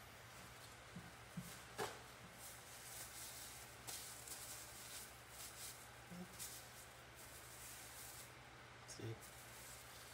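Faint rustling of a paper towel and plastic gloves as paint is wiped off the hands, with a sharp click just before two seconds in and a low steady hum underneath.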